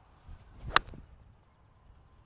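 A golf club swinging through and striking a ball off the fairway: a faint swish of the downswing, then one sharp crack of impact about three-quarters of a second in.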